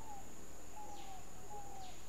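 A bird repeating short, falling whistled notes about every three-quarters of a second, over a steady high-pitched insect drone.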